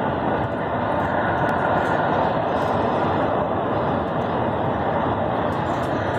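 Steady engine and road noise heard inside the cab of a large vehicle driving at highway speed.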